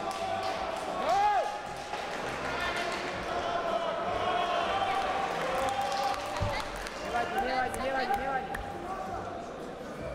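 Indistinct voices calling out across a large, echoing sports hall, with a single low thud about six and a half seconds in.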